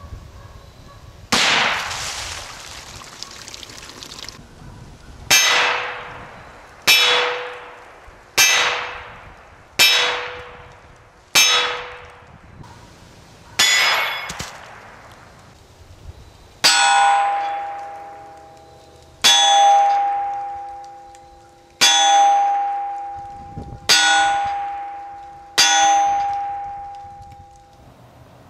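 .22 LR rifle shots striking steel targets: about a dozen evenly spaced shots, each ending in a clang of the steel plate ringing out and fading over a second or two. The first shot is followed by a longer rush of noise. The last five ring at a higher, longer-lasting pitch, from a different plate.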